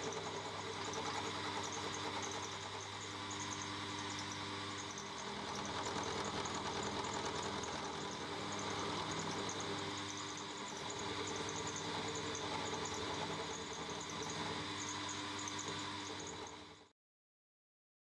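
Milling machine running with its end mill cutting a small metal workpiece held in a vise: a steady motor hum with a few gentle swells in level. It cuts to silence about a second before the end.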